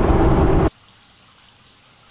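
Steady road and engine noise inside a moving car's cabin, cutting off suddenly less than a second in, followed by a low, steady indoor room tone.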